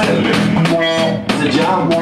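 Live rock band playing, with electric guitar chords held over a drum kit.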